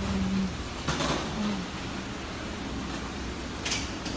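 Indoor room tone: a steady low hum, with a brief voice at the start and two short scuffing noises, about a second in and near the end.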